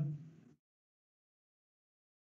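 A man's voice trails off in the first half-second, followed by complete silence with no background sound at all.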